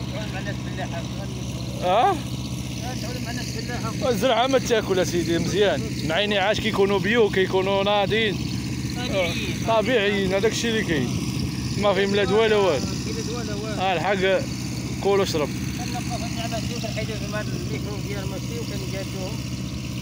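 Intermittent talking over a steady low engine hum that runs without a break.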